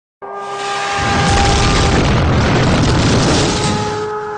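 A long, deep boom swells about a second in and fades near the end, over a held musical note.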